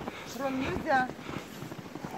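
A beagle gives two short, high whining yelps, the second falling in pitch. It is a trained 'speak' on command to say hello.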